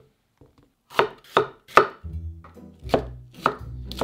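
Chef's knife chopping a red bell pepper on a wooden cutting board: three quick cuts about a second in, then a few more spaced cuts in the second half.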